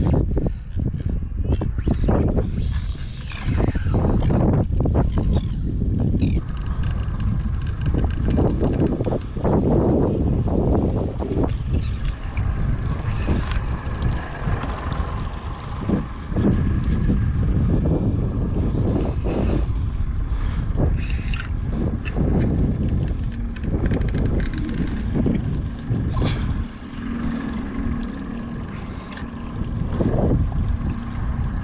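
Gusty wind buffeting the microphone, heavy at the low end. A faint steady high whine runs underneath from about six seconds in, with a few short knocks.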